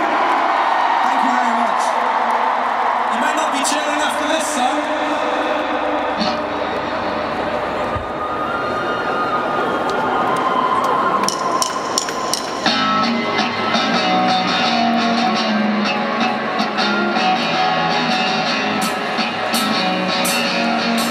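A large crowd cheering and screaming for a big cheer, then about twelve seconds in a live rock band starts a song with electric guitars, bass and drums.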